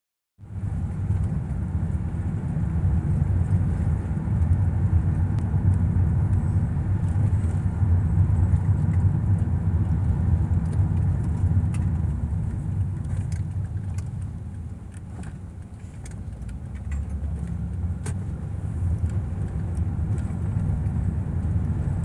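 Road and engine noise heard inside a moving car's cabin: a steady low rumble that eases for a couple of seconds past the middle and then builds again.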